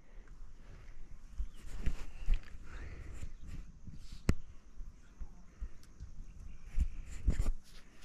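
Stones being handled and set on a mud-mortared stone wall: scattered knocks and thuds, with one sharp knock about four seconds in and a cluster of heavier thuds near the end.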